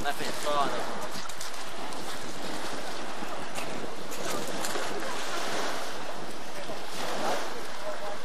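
Steady wind rushing across the microphone, with faint voices in the distance briefly near the start and again about seven seconds in.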